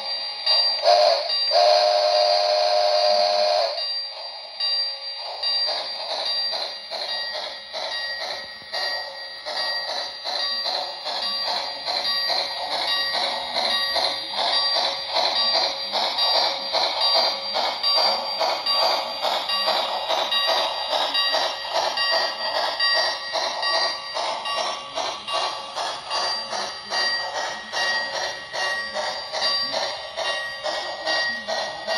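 Model train sound effects from a Lionel Polar Express steam locomotive. A steam whistle blows for about two seconds just after the start. Then a fast, even rhythmic chuffing runs on with a bell-like ringing over it.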